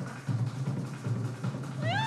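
Kumina drumming: hand drums beating a steady, repeating pattern for the dance. Near the end comes a short high cry that rises and falls in pitch.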